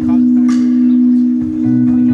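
Live band playing an instrumental stretch between vocal lines: a held note rings steadily, with a drum and cymbal hit about half a second in.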